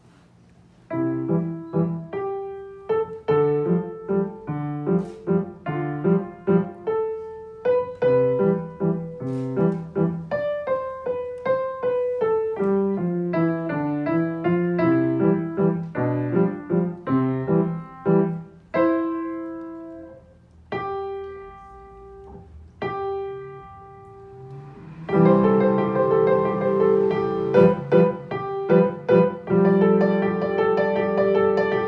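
Grand piano played by a child: a piece in C major that starts about a second in. A sparser, quieter stretch of single held notes past the middle is followed by louder, fuller playing near the end.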